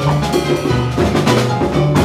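Afro-Cuban jazz band playing live: congas struck by hand close up, over a drum kit with cymbals and an upright bass line moving note to note underneath.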